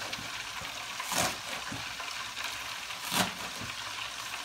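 A dull kitchen knife cutting through green onions on a cutting board, two strokes about two seconds apart, over a steady sizzle of frying.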